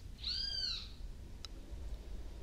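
A short, high-pitched squeak about half a second long that rises and then falls in pitch.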